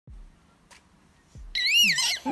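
A baby's high-pitched squeal that starts about one and a half seconds in and rises and falls in pitch, after a couple of soft low thumps.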